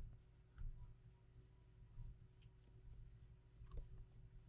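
Near silence: a low, steady room hum with three faint, short clicks of a computer mouse or keyboard spread through it.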